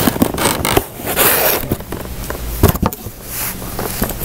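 Cardboard mailer box being opened by hand: scraping and tearing noises, the longest about a second in, with rustling of the flaps and packing paper and a couple of knocks near the end.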